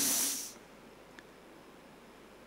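A man's drawn-out hissing 's' trailing off the end of a spoken word, lasting about half a second, then quiet room tone with a faint tick.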